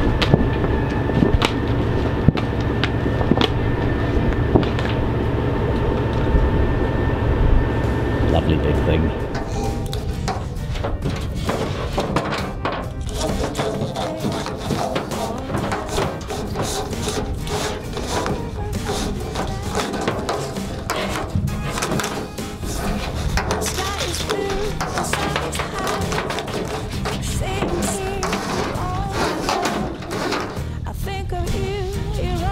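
Caterpillar 3406 inline-six diesel running steadily, just started for the first time after a main-engine swap. About nine seconds in it gives way to background music.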